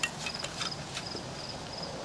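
Quiet outdoor ambience with an insect chirping in a steady, rapid high-pitched pulse, and a few light clicks near the start from the glass fuel jar and its metal fitting being handled.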